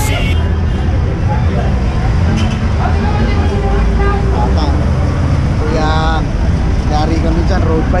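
Steady low road-traffic rumble with scattered voices of people talking nearby, a few short exclamations standing out about six seconds in.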